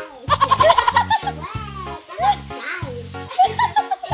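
Background music with a steady, repeating bass beat, with high-pitched laughter over it.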